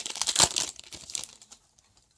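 Wrapper of a Parkhurst hockey card pack being torn open and crinkled. It is loudest in the first half second and dies away by about a second and a half in.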